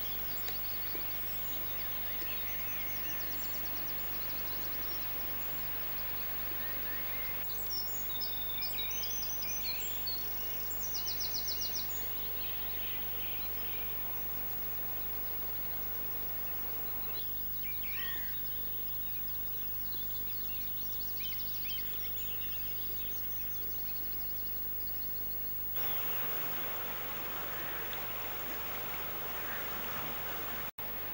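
Wild birds chirping and singing over steady background noise and low hum, with a quick repeated trill about ten seconds in. The background changes abruptly a few times.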